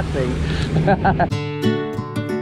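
Twin outboard motors of a fast-running boat, a steady low rumble under a man's laughing speech. About a second in, this cuts to strummed acoustic guitar music.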